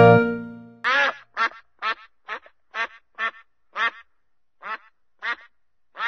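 Mallard quacking in a steady series of about ten quacks, roughly two a second, the first the longest and loudest; before them the last chord of background music fades out.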